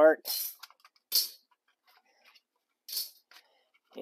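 Thin metal side plates of a folding Altoids-tin wood stove being taken apart by hand: three short, light metal scrapes, about a second or two apart.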